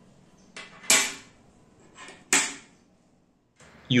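Small pieces of 6 mm steel plate handled and set down on a steel workbench: a few sharp metal clinks with a short ring, two of them louder than the rest.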